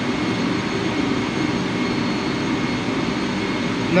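Steady background noise of a ship's engine control room: ventilation and engine-room machinery running evenly, with faint high steady whine tones.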